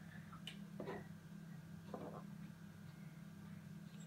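Quiet room with a steady low hum, broken by a few faint, brief sounds.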